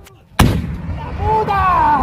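A single loud blast from an RPG rocket about half a second in, followed by a rumbling tail.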